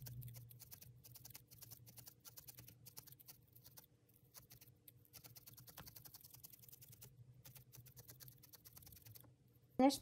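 A felting needle stabbing into core wool again and again, faint quick pokes several a second, as small blobs of wool are felted onto the figure's face to build the eye sockets. The pokes stop shortly before the end.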